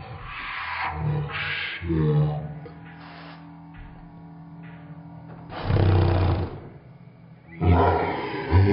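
Pump spray bottle of face mist giving several short hissing sprays, the loudest about six seconds in, over background music.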